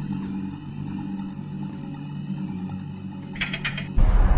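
Low, steady droning hum made of several sustained low tones, with a brief rapid crackle near the end.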